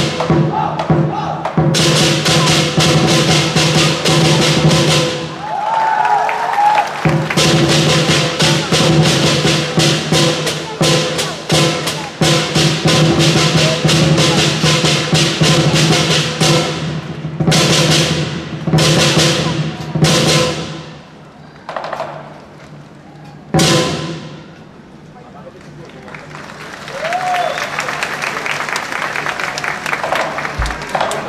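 Lion dance percussion band of drum, gong and cymbals playing a fast, loud beat under a steady ringing. The beat stops briefly a few times and drops away twice in the second half, ending in a softer passage.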